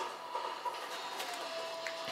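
Quiet handling of a plastic bottle-cap lens adapter being worked onto a small action camera, with a few light clicks. A faint steady high tone starts a little past halfway.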